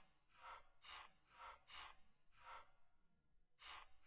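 Near silence with faint, short computer-keyboard key taps about twice a second.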